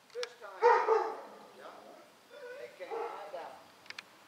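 A dog barking and whining in two bursts, the louder one about half a second in and a second, wavering one around three seconds in.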